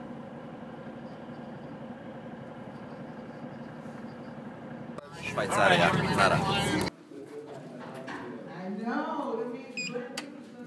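Faint steady background noise, then a person's voice for about two seconds around the middle, followed by quieter voice sounds.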